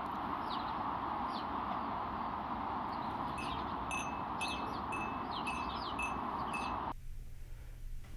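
Outdoor ambience: birds chirping over a steady hiss. From about three seconds in, a bright ringing tone like a small chime repeats evenly about twice a second. Near the end the sound cuts abruptly to quiet room tone.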